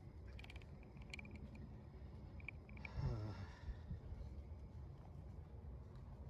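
Quiet background hiss with a few short faint clicks in the first three seconds, and a man's hesitant 'uh' about three seconds in.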